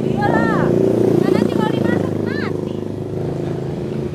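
A motor vehicle passing on the street: its engine grows louder to a peak about a second in, its pitch drops as it goes by, and it fades away. Faint voices are heard over it.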